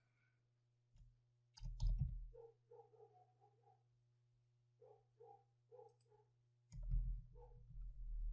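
Computer keyboard typing: short bursts of key clicks about two seconds in and again near the end, over a faint low hum.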